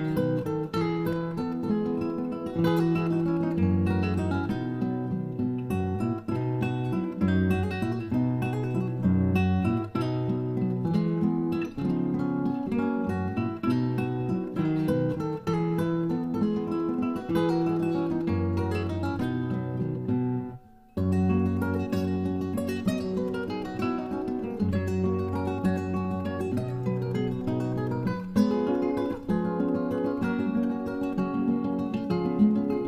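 Background music played on acoustic guitar, strummed and picked. It breaks off briefly about two-thirds of the way through, then carries on.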